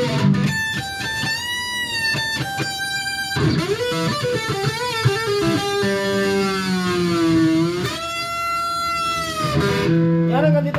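Electric guitar, a Stratocaster-style solid-body, played through an amplifier: single-note lead phrases with string bends. Near the middle, one long note is pushed down in pitch with the tremolo arm and let back up.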